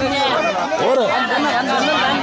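Several people's voices talking over one another: a crowd's overlapping chatter.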